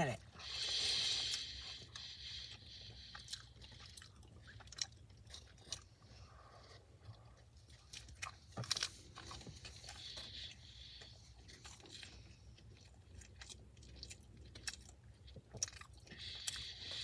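Close-up chewing and crunching on a breaded fried-chicken sandwich, with scattered crisp bites and mouth clicks over a steady low hum.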